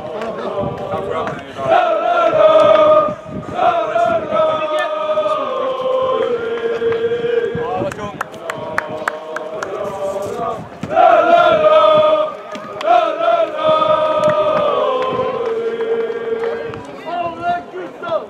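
A group of men singing a football chant in unison, the same phrase twice, its held notes stepping down in pitch. Talk and a few sharp clicks come between the two phrases.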